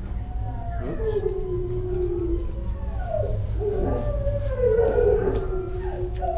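Dogs howling in long, wavering calls that rise and fall and overlap one another, over a steady low hum.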